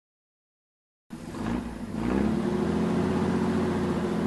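Van engine sound effect: after about a second of silence an engine comes in, rises briefly in pitch, then runs steadily.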